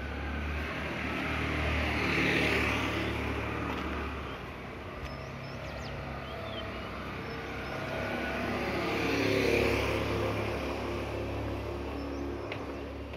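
Motor vehicles passing along the street, two of them: one swells and fades about two seconds in, the next about nine and a half seconds in, each an engine hum with road noise.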